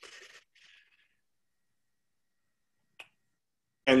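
Near silence with one short, faint click about three seconds in; a man's voice starts right at the end.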